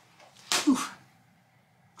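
A woman's short, breathy exclamation, a 'whew' blown out in two quick pushes about half a second in.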